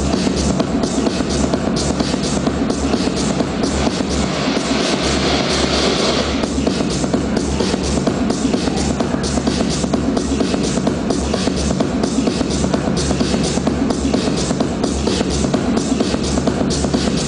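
Electronic dance music from a DJ set, played loud over a club sound system, driven by a steady kick-drum beat. A hissing wash in the upper range builds and cuts off suddenly about six and a half seconds in.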